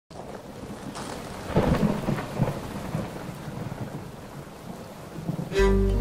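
Storm noise: rumbling swells over a steady hiss, loudest about a second and a half in. Bowed strings come in with a held chord near the end.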